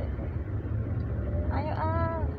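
Steady low rumble of a Toyota car's cabin on the move: engine and road noise heard from inside. A high-pitched voice calls out briefly near the end.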